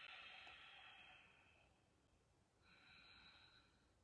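A woman breathing slowly and deliberately through her nose with her mouth closed, faint: one long breath fading out over the first second and a half, then a shorter one from about two and a half seconds in.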